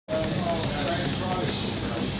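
Indistinct voices in the background over steady room noise with a low hum.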